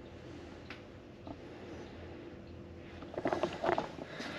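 Quiet room tone with a faint steady hum and a few small clicks, then a short burst of a man's voice near the end.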